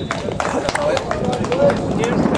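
Several men's voices talking and calling out across an open pitch, with scattered sharp clicks among them.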